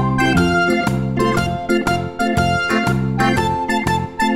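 Instrumental background music with a steady beat, pitched keyboard-like notes over a bass line.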